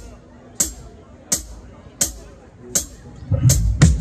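A drummer's count-in: sharp, bright ticks about 0.7 s apart, a little under 90 a minute, then the rock band (electric bass, electric guitar and drum kit) comes in together about three seconds in.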